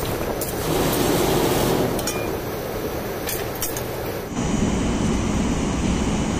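A shovel scraping through crushed stone gravel and tipping it into a metal pan, with sharp clinks of stones on the blade and pan. About four seconds in the sound cuts abruptly to a steady low outdoor rumble.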